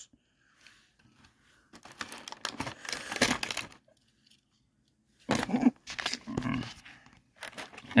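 Clear plastic blister packaging crinkling and crackling as it is handled, for about two seconds.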